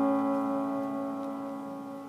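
A piano chord, held and slowly fading, with several notes sounding together.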